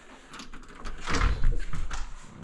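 A door being unlatched and pulled open: a few sharp clicks of the knob and latch, then a louder dull bump and rustle about a second in as the door swings.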